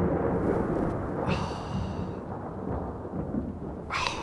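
A low, thunder-like rumble fading away, with a brief high ringing tone about a second in and a short sharp sound at the very end.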